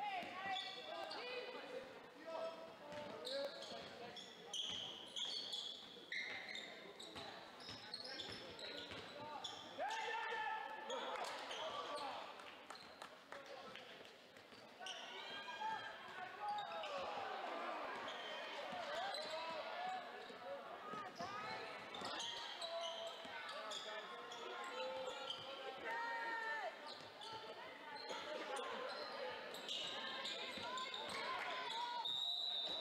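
Basketball being dribbled on a hardwood gym floor during live play, with sneakers squeaking and voices of players and spectators carrying in the large gym.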